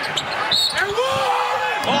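Arena basketball sound: a steady crowd haze with sneakers squeaking on the hardwood and the ball bouncing, as players battle under the basket. About a second in, a commentator's drawn-out 'oh' rises over it.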